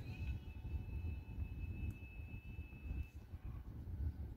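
Faint background music over a steady low rumble, with one thin held high note lasting about three seconds.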